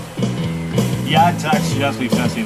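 A man singing a song in Russian into a microphone over an electronic keyboard playing held chords, both amplified.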